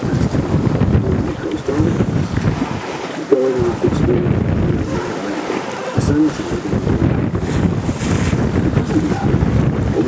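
Loud, gusty wind buffeting the microphone aboard a sailing boat, with sea noise underneath.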